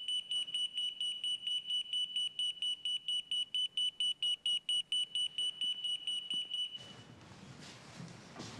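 Pager beeping: a rapid, high electronic beep, about five a second, that stops suddenly near the end.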